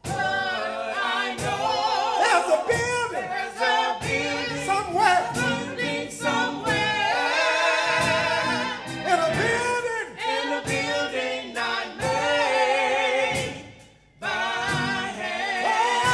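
Gospel song sung by a small group of singers with a lead voice on microphone, over a steady beat. The music dips briefly about fourteen seconds in, then comes back.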